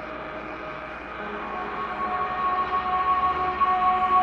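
Ambient electronic music: sustained synthesizer drones and held tones. Two higher tones come in about halfway, and the music grows louder.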